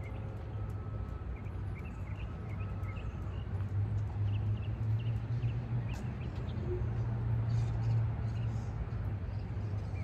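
Outdoor ambience: a steady low rumble that grows louder in the middle, with short, faint bird chirps scattered through it.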